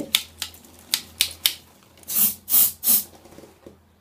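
A few sharp clicks of the aerosol deodorant can being handled, then three short hissing sprays from the can.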